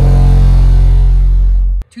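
Black Diamond DIA-R12 12-inch subwoofer playing a 45 Hz test tone in a dB burp test: a very loud, steady, deep tone that stops abruptly near the end. It is driven with about 2,677 watts and reads 139 dB on the meter.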